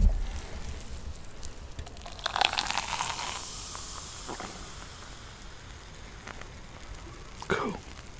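Root beer poured from a can into a glass over vanilla ice cream, starting about two seconds in, then fizzing and crackling as the foam rises; the fizz fades away over the next few seconds. A bump from handling the glass comes at the very start.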